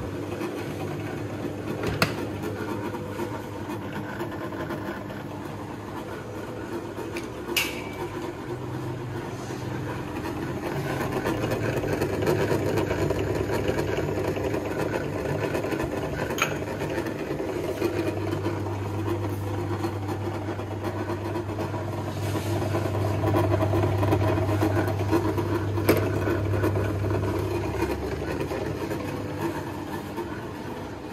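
Homemade 12 V to 220 V inverter's transformer humming and buzzing steadily under load. The low hum grows stronger about two-thirds of the way in. A few sharp clicks break in.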